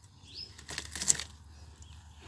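A ripe red dragon fruit twisted and pulled off its cactus stem by hand: a burst of rustling ending in a sharp snap just past a second in.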